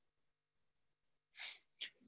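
Near silence, then a short, quick breath drawn in through the mouth about a second and a half in, followed by a small mouth click, as a man gets ready to speak.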